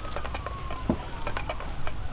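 Footsteps on dry grass and leaf litter, a few soft scattered crunches, over a steady low rumble and a faint thin tone that slowly falls in pitch.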